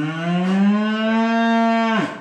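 A cow mooing: one long, loud call that rises a little in pitch, holds steady and stops sharply near the end.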